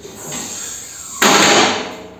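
Welded steel hood frame of a homemade mini tractor swinging open and bouncing against its stop, a loud metal clatter lasting about half a second just past the middle.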